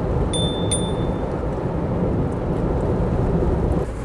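Steady wind noise buffeting the microphone with road rumble from a moving car. Two short high dings, like a notification bell, sound less than a second in.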